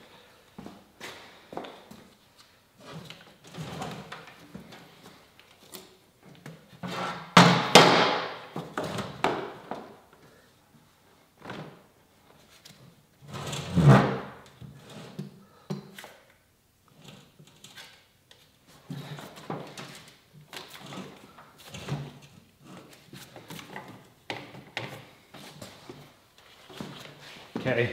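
Clunks, knocks and scrapes of metal scooter parts as a Yamaha Zuma's engine is lifted and lined up in its frame on a workbench. The loudest clunks come about eight seconds in and again near fourteen seconds.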